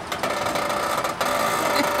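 Pickup truck engine running steadily at low speed while it slowly tows a travel trailer, a steady mechanical drone.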